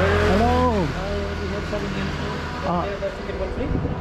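Street traffic: a motor vehicle's engine runs with a steady low hum and passes close by, loudest in the first second, with a brief voice partway through.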